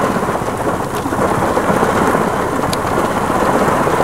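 Steady rain pattering on a surface, an even, dense hiss with no breaks.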